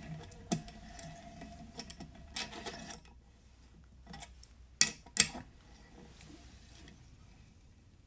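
A 7/16-inch tap being turned by hand with a wrench, cutting threads in the cast-iron engine block: faint metallic ticking and creaking for the first three seconds, then two sharp metal clicks about five seconds in.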